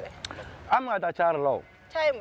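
A person speaking: a voice in short phrases, with a falling, wavering stretch about a second in.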